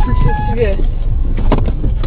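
Steady low rumble of a stationary car's idling engine heard inside the cabin. In the first half-second there is a short run of electronic tones stepping in pitch, and a voice is faintly heard.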